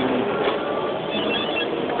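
Electric Align T-REX 700 RC helicopter running: a steady rush of rotor noise with a few faint high steady tones from the electric drive.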